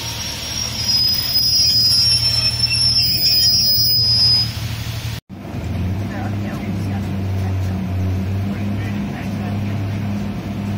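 Diesel multiple unit moving slowly along a platform, a high metallic squeal from its wheels over the low engine hum. After an abrupt cut about five seconds in, a steady diesel engine drone is heard from aboard the moving train.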